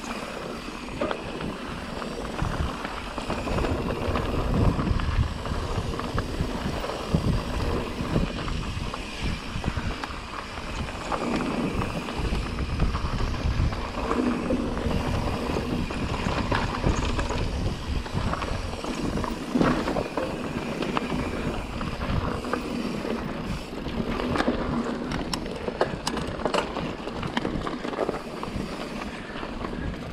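Pivot Trail 429 mountain bike ridden over rocky dirt singletrack: tyres rolling and crunching over stones, with frequent rattles and knocks from the bike over the rocks, and a steady rumble of wind on the microphone.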